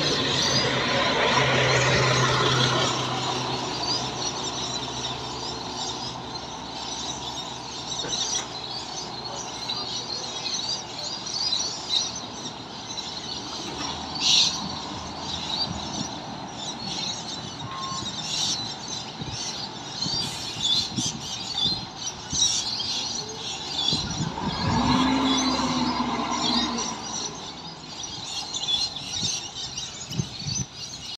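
Mercedes-Benz city bus's diesel engine pulling away past at close range, loudest for the first three seconds, then fading into the distance. Birds chirp throughout, and another vehicle passes about 25 seconds in.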